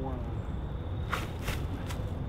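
Footsteps crunching in dry fallen leaves: three quick crackling steps as a disc golfer strides into his throw.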